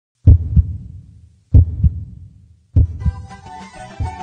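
A heartbeat sound effect: three deep double thumps (lub-dub) about 1.2 seconds apart, each fading away, before music starts about three seconds in.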